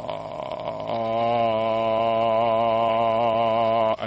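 A man's voice moves from a creaky vocal fry into a low sung tone about a second in, then holds it steady with a slight vibrato. He is showing how a relaxed, low sung pitch can grow out of the fry tone.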